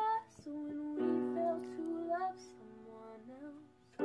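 Background song: a woman singing held notes over a light plucked-string accompaniment, fading almost out near the end.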